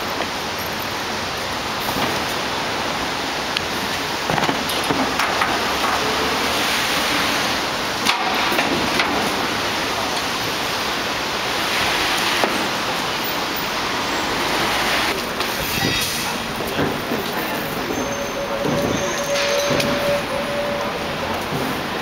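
Steady city street noise, mostly passing traffic, with a few scattered knocks and clatter.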